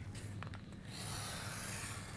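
Plastic template guide rubbing and sliding across kraft poster board as it is shifted into position, a soft steady rubbing in the second half.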